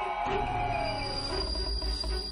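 Eerie film-score sound design: sustained high screeching tones over a low rumble.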